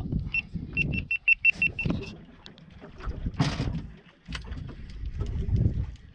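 Fishing reel ticking rapidly, about eight high clicks in a second and a half, as the jig is let back down. Then wind and water noise around the boat, with a short hiss about three and a half seconds in.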